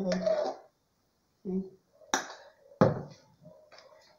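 A metal spoon scraping and knocking against a metal saucepan as the last of a thick cream is scraped out, with two sharp knocks about two and three seconds in and lighter clatters after them.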